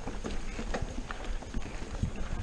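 Mountain bike riding over a rocky trail: irregular clicks, knocks and rattles from the bike and its tyres on stone, over a steady low rumble.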